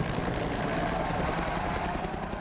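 Helicopter flying overhead: a steady rush of rotor and engine noise.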